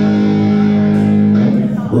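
Amplified electric guitars holding one sustained chord that rings steadily, then fades about a second and a half in.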